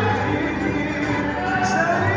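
Cape Malay choir song: a group of men's voices singing over a strummed guitar and banjo accompaniment.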